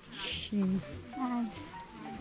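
A short spoken greeting, "sawasdee" (Thai for hello), over background music with a slow stepping melody.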